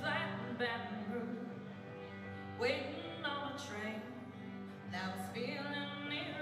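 Live band playing an instrumental intro. Electric guitar notes ring out over a steady held low chord, with a few cymbal hits.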